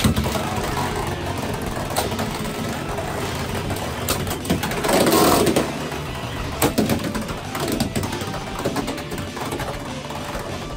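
Two Beyblade X tops, Rhino Horn and Dran Dagger, whirring as they spin on the stadium floor. A launch sounds right at the start. Sharp clacks follow as the tops strike each other, with a louder clash about five seconds in.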